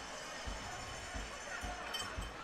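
Faint ice-hockey arena ambience: crowd murmur under the play, with a few short dull low thumps.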